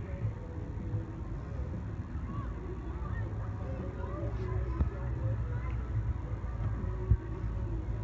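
Outdoor fairground background: a steady low rumble with faint, scattered distant voices, and one short knock about seven seconds in.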